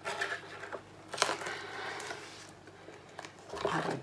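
Small handling noises close to the microphone: soft scraping and rustling, with one sharp click about a second in.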